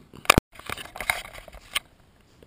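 Handling noise from laptop parts: one sharp, loud click near the start, then faint scattered clicks and rustling, with one more small click near the end.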